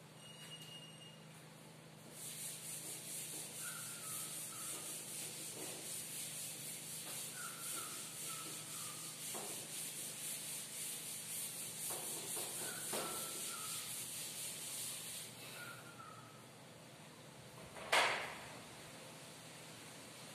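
Chalkboard being wiped with a duster: a steady, rapid rubbing from about two seconds in until about fifteen seconds, then one sharp knock near the end.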